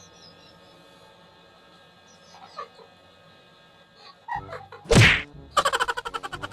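Quiet at first, then about five seconds in a single loud, sudden splutter as a laugh bursts out through a mouthful of marshmallows, followed by quick, breathy bursts of laughter.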